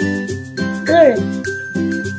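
Cheerful children's background music with a steady beat and a bright, tinkling melody, with one short voice sound about halfway through.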